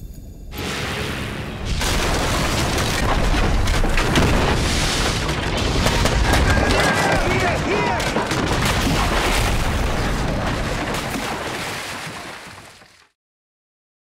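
Explosions in an animated film's soundtrack as a wooden bridge is blown apart: a long, dense, continuous blast noise with a heavy low rumble, fading out near the end.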